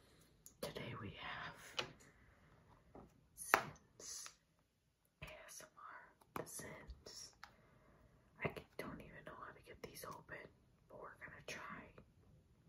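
A young woman whispering in short breathy phrases, with a brief dead-silent break about halfway through.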